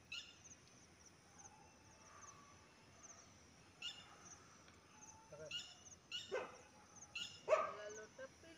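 Small birds chirping, short high-pitched chirps repeating on and off, with two short dog barks near the end.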